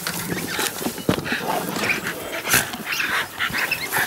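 Terriers scrabbling through loose hay after rats: busy rustling and scuffling, with short dog sounds.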